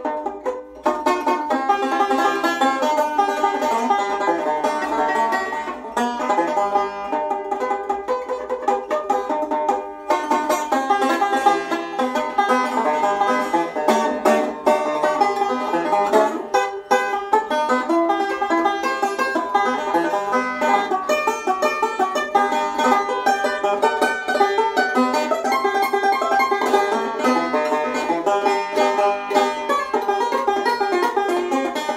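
Newly finished 'Arizona Queen' five-string banjo played solo in hard-driving bluegrass picking, a continuous run of quick plucked notes.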